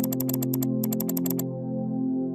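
Two rapid runs of sharp computer-mouse clicks, about a dozen quick ticks each, made while scrolling through a drop-down list, over steady synthesizer background music.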